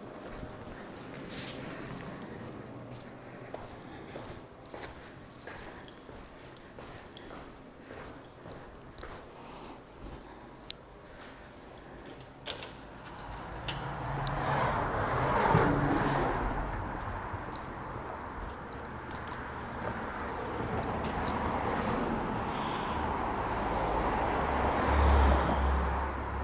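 Footsteps and clicks from a handheld phone while walking through an indoor hallway. About halfway through, a door opens onto the street and a steady rush of city street noise comes in, with a low rumble building near the end.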